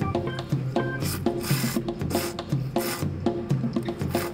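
Several loud, rasping slurps of ramen noodles being sucked up, over background music with a steady plucked beat.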